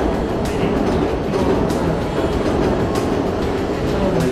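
A train running through a station, a steady rail rumble.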